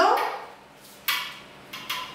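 Two short rustles as hands roll puff pastry on a baking tray lined with baking paper: a louder one about a second in, and a briefer, fainter one near the end.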